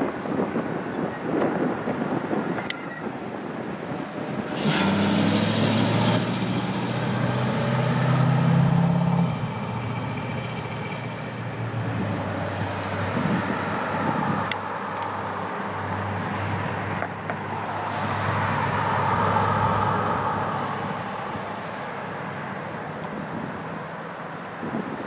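A car driving past on the road, its engine and tyres building about five seconds in and fading out over the next ten seconds or so, followed by a second, softer swell of road noise later on.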